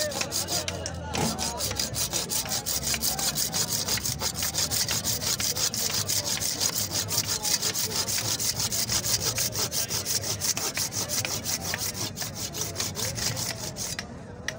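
Hand saw cutting through a cow's horn: quick, steady back-and-forth strokes, several a second, starting about a second in.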